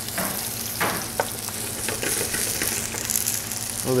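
Sliced onions sizzling in hot olive oil in a pan on high heat, a steady frying hiss, with a few short clicks in the first second or so as the onions are pushed around the pan by hand.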